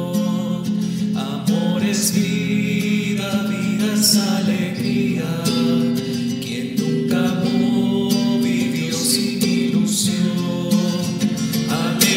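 Music: a slow hymn sung to acoustic guitar, with sustained notes that change every second or two.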